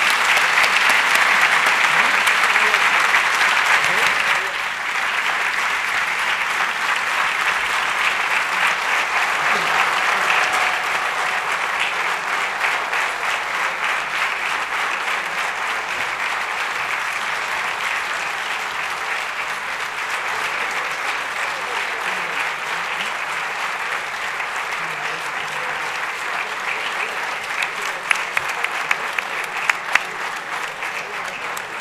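Sustained applause from legislators in the chamber, loudest for the first four seconds or so, then settling to a steady level, with a few sharper single claps near the end.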